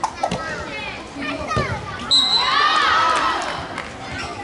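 A group of children shouting and cheering during an outdoor ball game, with scattered calls at first. About halfway through, right after a short high steady tone, many voices rise together in a loud burst that lasts about a second and a half.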